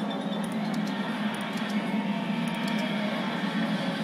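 Several video soundtracks playing at once from a computer, blending into a dense, steady jumble of sound in which no single voice or tune stands out.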